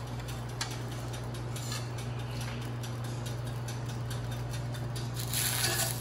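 Light scattered clicks and taps of a metal spatula against a stainless steel frying pan as bread rounds are slid in, over a steady low hum.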